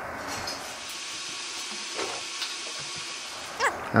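Steady background hiss with two faint clicks about halfway through, then a man starts to speak just before the end.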